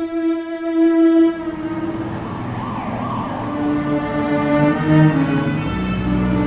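Background score of sustained, low bowed-string notes that shift pitch slowly. About halfway through, a brief wavering rise-and-fall tone sounds over the strings.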